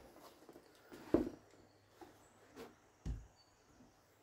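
A few soft knocks and thumps from handling a spring air rifle as it is raised into aim, the sharpest about a second in and a low thump about three seconds in.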